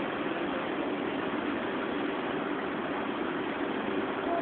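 A steady, unchanging mechanical hum over a bed of noise, with no separate events.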